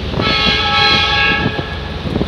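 A horn sounds one long steady blast of about a second and a half, over wind noise on the microphone.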